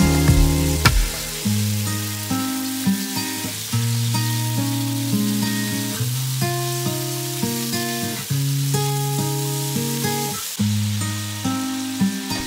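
Chicken burger patties sizzling as they fry in olive oil on a griddle pan, under louder background music with held notes that change every second or so.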